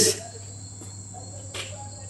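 Quiet background: a steady high-pitched tone and a low hum run throughout, with the end of a spoken word at the very start.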